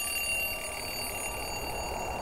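Twin-bell mechanical alarm clock ringing continuously, a steady high metallic ring, over a low rumble that rises about a second in.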